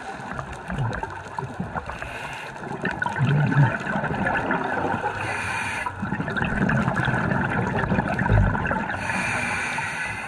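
Scuba regulator breathing underwater: a short hiss of inhalation about five seconds in and again near the end, with exhaled bubbles gurgling in between.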